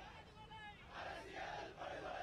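A crowd of protesters shouting slogans together, faint, with the shouts growing louder about a second in.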